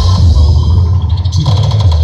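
Loud electronic dance music with heavy bass, played at high volume through towering walls of stacked loudspeaker cabinets. About a second and a half in, the track changes to a fast run of sharp drum hits.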